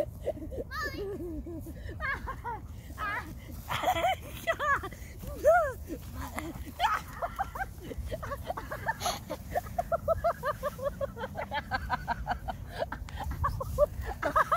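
A young husky-mix dog yipping and whining in play, mixed with a boy's high-pitched laughter, in short rising-and-falling bursts. Near the end comes a quick run of short repeated yips or laughs.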